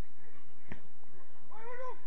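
A football being kicked on an artificial pitch, a single sharp thud about a third of the way in. Near the end comes a short, high-pitched cry that rises and falls, a player's shout.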